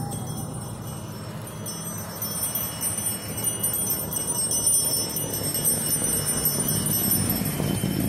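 Engines of vintage cars running as they drive past, growing louder through the middle as an old pickup truck comes closer. A steady, high metallic jingling rings over them.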